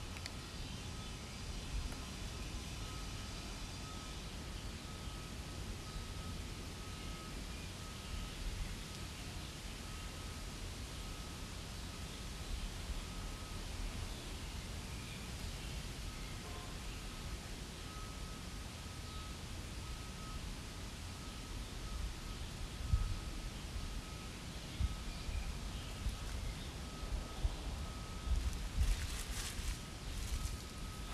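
Steady outdoor background with a low rumble and a faint, high, on-and-off tone running through it. Several short rustles and knocks come in the last few seconds.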